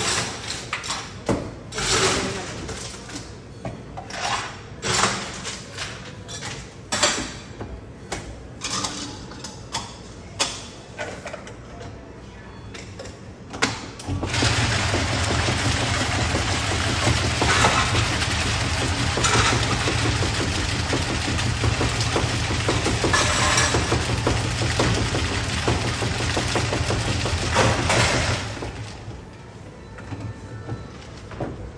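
Clatter of cups and bottles being handled, then, about halfway through, a bubble tea cup shaker machine starts and runs for about fourteen seconds: a steady mechanical rattle over a low hum that stops shortly before the end.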